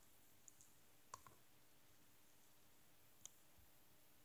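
Near silence with a few faint computer mouse clicks: a quick pair about a second in and a single click a little after three seconds.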